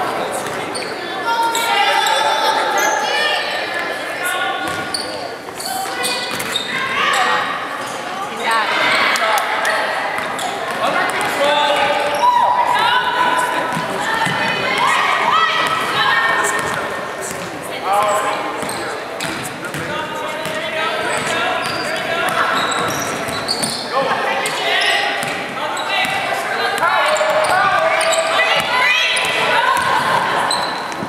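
Basketball game play in a gymnasium: a ball bouncing on the hardwood court and voices calling out, echoing through the large hall.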